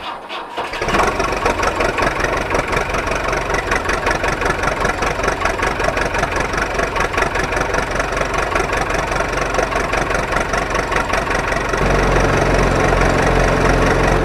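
Tractor engine sound, laid over the picture of toy tractors, starting up about a second in and running with a rapid, even beat. About twelve seconds in it changes to a deeper, steadier note.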